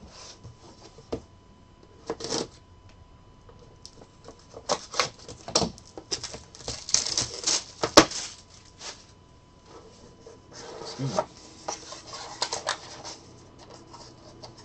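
Hands handling a cardboard trading-card hobby box and its plastic wrapper: rustling and crinkling with scattered clicks and taps against the table, the sharpest click about eight seconds in.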